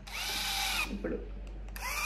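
Electric epilator's motor switched on, spinning its rotating tweezer head with a whine for under a second, then switched off and on again near the end.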